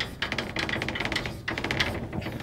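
Chalk writing on a blackboard: quick runs of taps and scratches as letters are written, with brief pauses between words.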